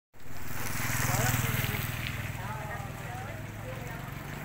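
A small engine idling steadily with a fast, even pulse, under people's voices.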